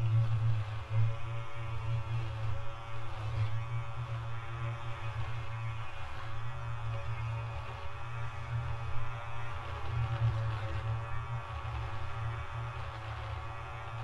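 Electronic ambient music built from the sound of an electric beard trimmer cutting stubble: a steady low buzz under layered sustained tones.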